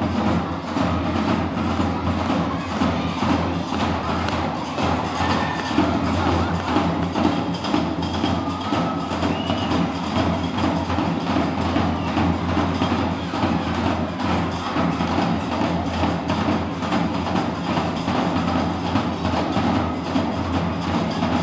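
Live Moroccan Gnawa music played by a small ensemble: a fast, unbroken clicking percussion rhythm over a steady low bass.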